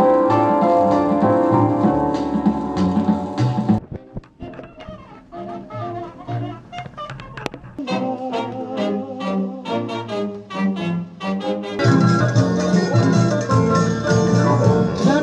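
Jazz music with brass and piano played from a vinyl record on a turntable. About four seconds in, the music drops suddenly to a thinner, quieter passage; it becomes fuller and louder again near the end.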